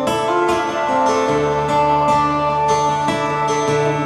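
Steel-string acoustic guitar playing an instrumental passage: plucked melody notes ringing over held bass notes.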